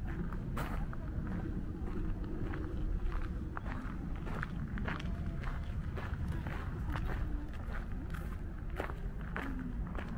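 Footsteps of a person walking on a packed gravel path, the steps landing roughly twice a second over a steady low rumble.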